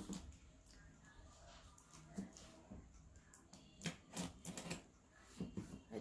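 A cardboard shipping box being handled: scattered soft clicks and knocks, most of them bunched together in the last two seconds.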